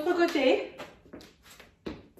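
A woman's brief voiced sound, like a short untranscribed word or exclamation, in a small room. It is followed by several short soft noises and one soft thump near the end.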